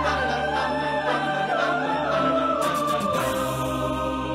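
Mixed a cappella choir of men's and women's voices singing with no instruments: a low held bass note under a wavering upper melody line, with the chord changing about three seconds in.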